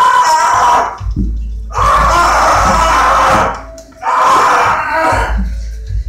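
A man screaming three times, each cry lasting one to two seconds, with short pauses between them.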